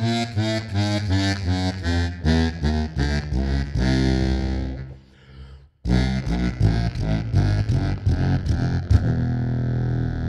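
Custom Hohner Bass 78 contrabass harmonica, its double-deck reeds tuned in octaves, playing a descending chromatic scale of short notes about four a second, with a brief pause midway. Near the end a hand brushes the microphone with a single knock, and the scale settles into a long held low note.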